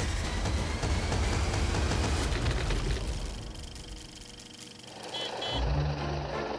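Edited soundtrack of music and sound effects: a dense, rumbling low drone with crackle that fades away, then two short high beeps and a low hum starting near the end.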